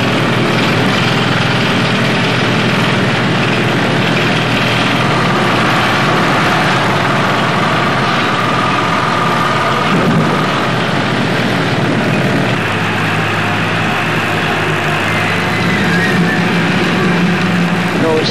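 A heavy engine or machine running steadily, with a constant hum and a slight shift in pitch about ten and twelve seconds in.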